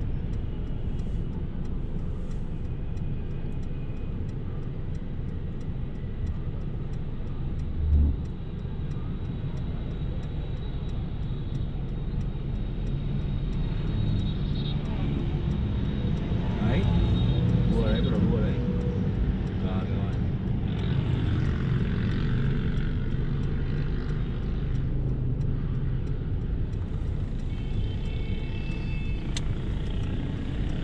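Inside the cabin of a moving Mercedes-Benz car: steady low engine and road rumble while driving in traffic, with a single short thump about eight seconds in.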